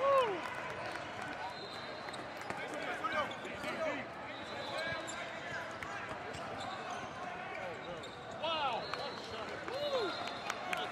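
Basketball game in play: sneakers squeaking on a hardwood court and a ball bouncing, over background voices of spectators in a large hall. The squeaks come as short rising-and-falling chirps, a loud one right at the start, a few around three to four seconds in, and another cluster near the end.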